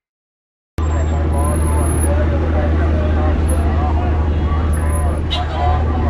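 Busy street ambience that starts suddenly about a second in after a moment of silence: a loud, steady low rumble of traffic with the voices of many passers-by talking.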